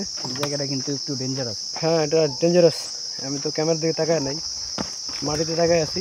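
A steady, high-pitched insect chorus running without a break, with a man's voice talking in short phrases over it.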